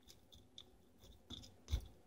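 Faint crunching clicks of a knife cutting into a northern pike's scaly belly skin: a few small ticks, the loudest near the end with a soft thump.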